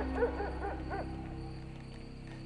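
A quick run of four or five short animal barks in the first second, fading out, over soft steady background music.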